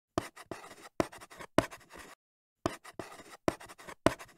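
Chalk writing on a chalkboard: sharp taps, each followed by short scratchy strokes, in quick bursts with a brief silent pause about halfway through.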